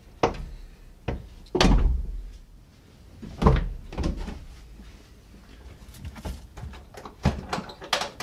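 A string of knocks and thumps as a kei truck's cab seat is unclipped and tilted up to reach the engine beneath it. The two loudest, deepest thumps come about a second and a half and three and a half seconds in.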